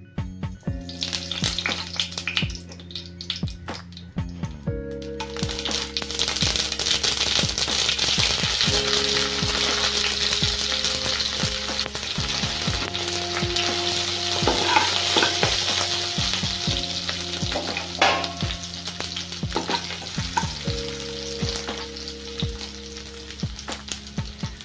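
Mustard seeds frying in hot oil in a wok, sizzling with scattered pops. From about five seconds in the sizzle becomes much louder and steadier, as dried red chillies, chopped garlic and greens fry in the oil.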